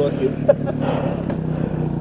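Dirt bike engines idling steadily, with short bursts of laughter over them.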